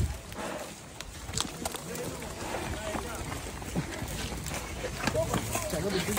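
Faint, scattered talk from several men in the background, with steps and knocks on dry, sandy ground as people and a buffalo walk along.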